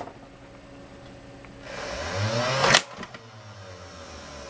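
Automatic Tommy 20 Nerf gun firing one dart: its two flywheel motors spin up with a rising whine for about a second, then a sharp crack as the pusher motor fires the dart, after which the whine stops.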